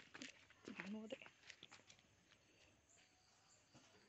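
Near silence, apart from a brief faint voice in the first second or so and a few faint ticks.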